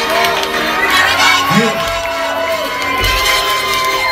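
Concert crowd cheering and shouting over music.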